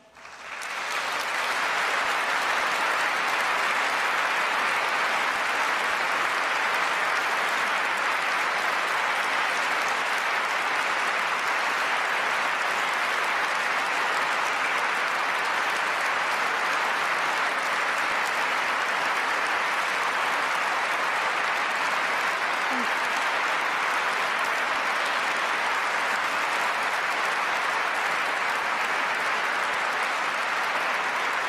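A large audience applauding, building up quickly in the first second or so and then holding steady and dense.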